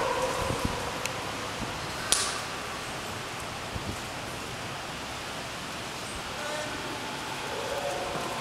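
Steady background hiss and murmur of a busy aquarium viewing area, with faint distant voices and one sharp click about two seconds in.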